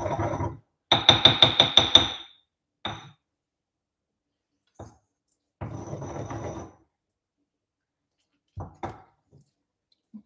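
Stone mortar and pestle crushing ginger and mint. A rapid run of about ten ringing strikes comes about a second in, then a single knock. A stretch of grinding follows in the middle, and a few knocks come near the end.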